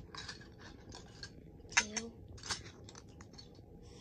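Plastic fraction tiles clicking and rattling against each other as they are picked up one by one to be counted, in a run of short irregular clicks.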